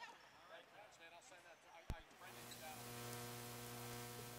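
Faint background voices, then a sharp click about two seconds in, after which a steady electrical hum with hiss comes up on the audio line and holds.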